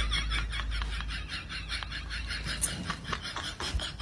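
A man giggling in quick, even, high-pitched pulses that grow fainter.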